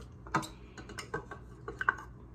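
A utensil clicking and tapping against a small measuring cup as softened butter is scraped out into a stand mixer bowl: several short, light clicks, the sharpest about a third of a second in.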